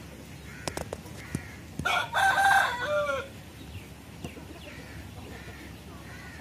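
A rooster crows once, a call of about a second and a half starting about two seconds in and ending on a falling note. Faint clucks and a few clicks come before and after it.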